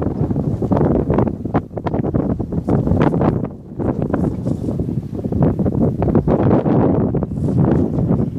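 Wind buffeting a phone microphone: a loud, gusting low rumble that keeps swelling and dipping, briefly easing a little after the middle.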